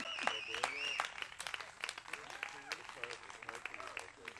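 Clapping and applause with a wavering high whistle in the first second, the claps thinning out as low voices talk.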